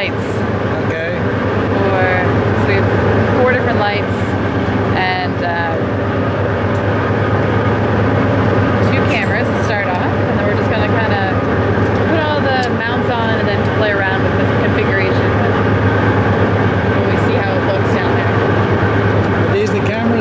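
A fishing boat's engine running at a steady, even hum, with people talking indistinctly over it throughout.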